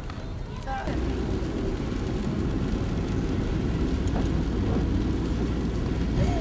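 Car engine and road noise heard inside the cabin: a steady low rumble that grows louder about a second in as the car gets moving, then holds steady.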